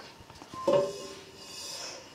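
Soft background music with sustained tones comes in about two-thirds of a second in. Under it is a light rustling hiss of mustard and cumin seeds sliding across the floor of an enameled cast-iron Dutch oven as the pot is shaken to toast them.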